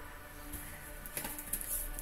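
Faint background music, with a few soft taps from handling on the table.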